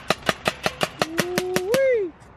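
Paintball marker firing in a rapid steady string, about six shots a second. In the second half a person's voice holds one long drawn-out note over the shots, rising and then falling away at the end.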